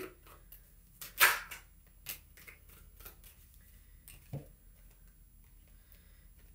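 Tarot cards being shuffled by hand: a loose run of short, irregular papery slaps and crackles, the loudest about a second in.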